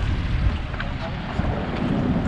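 Small inflatable dinghy under way with its outboard running: steady wind noise buffeting the microphone over the rush of water along the hull.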